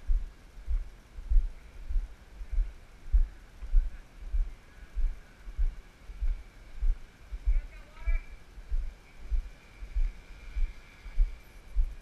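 Dull, regular thuds of walking footsteps jolting a GoPro, about two a second, with a faint steady high whine behind them.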